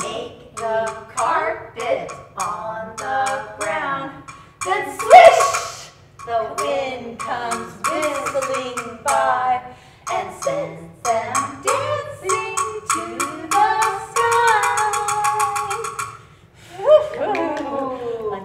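Women singing a children's song about leaves drifting softly down, over a steady rhythmic beat, with a brief loud breathy burst about five seconds in.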